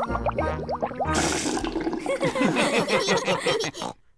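Cartoon gargling: a low bubbling gurgle of mouthwash in a child's mouth, then a short splashy spit just after a second in, followed by a run of quick giggling notes.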